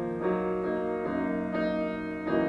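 Grand piano played solo in a classical style, with sustained notes and chords that change about every half second.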